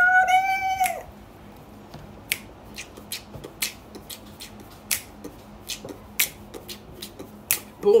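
A woman's brief high-pitched squeal, then a string of sharp finger snaps, uneven, about two a second.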